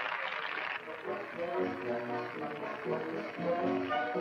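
Theatre audience applauding; about a second in, a band's music starts up and carries on over the fading applause.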